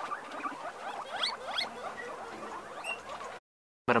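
Guinea pigs squeaking, a few short rising whistles over fainter chatter. The sound drops out briefly near the end.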